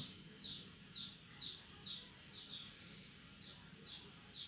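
A bird chirping faintly and repeatedly: short chirps that fall in pitch, about two a second.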